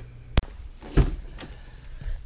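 Car door being opened: a sharp latch click, then a dull thump about a second in and a fainter click.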